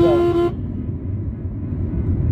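A vehicle horn toots once, a steady single-pitched tone lasting about half a second, then stops. Behind it the low rumble of the car and road traffic carries on, heard from inside the car's cabin.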